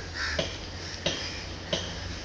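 A crow cawing repeatedly: about three short caws, roughly two-thirds of a second apart, over a steady low hum.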